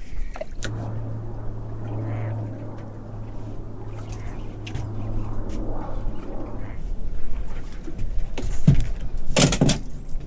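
Small boat's outboard motor running steadily with a low hum while the boat moves to a new spot, stopping about seven seconds in. A few loud bumps follow near the end.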